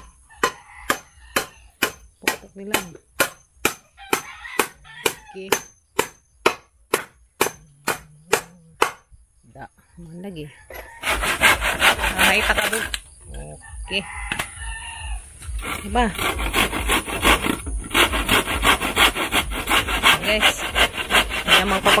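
Hammer knocking on a wooden frame in an even run of a little over two blows a second for most of the first half. Then a handsaw cutting through a wooden board with fast back-and-forth strokes, pausing briefly twice.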